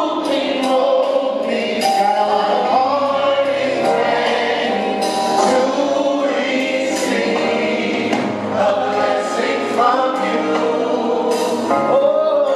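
Gospel choir singing a praise song live, with lead singers on hand-held microphones.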